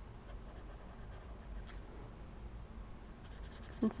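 Faint scratchy rubbing of a paper blending stump worked over colored-pencil shading on paper, pushing the pencil wax around to soften and blend it.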